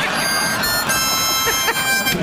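Blues harp (harmonica) blown in two held chords, the second starting a little under a second in.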